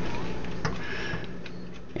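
Quiet room tone with a steady low hum and a single light click.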